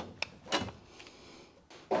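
A few light clicks and a brief rustle in the first half-second, hand tools being picked up and handled, then a quiet stretch.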